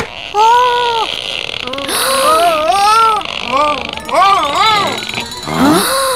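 A high-pitched voice making a string of wordless rising-and-falling moans, over a hissing sound effect in the middle, ending in a quick rising swoop.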